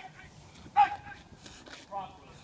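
Short, sharp vocal marks from the decoy in the bite suit as the police dog bites him, three quick ones with the loudest just under a second in, each marking a bite or regrip.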